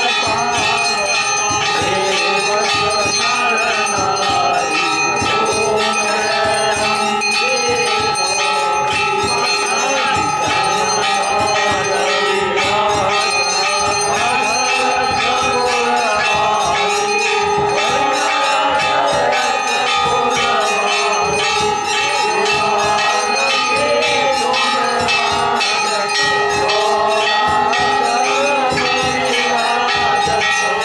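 Temple bells rung without pause for a Hindu aarti: a dense, steady clanging with several ringing tones held throughout, and voices beneath them.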